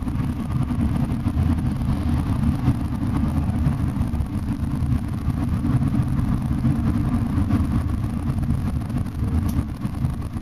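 Steady low rumble inside a long-distance express coach travelling at highway speed: engine and road noise heard through the cabin.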